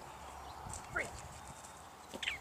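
A dog's paws thudding a few times on the dogwalk ramp and the grass as it comes off the contact. About a second in, a woman gives the release word "Free".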